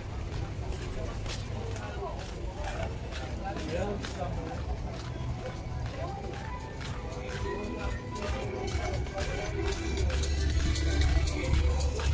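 Busy pedestrian street ambience: people talking as they pass, music playing and steady footsteps on paving. A low rumble swells near the end.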